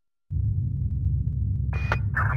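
A steady low rumble starts abruptly about a quarter second in, with a short crackle near the end.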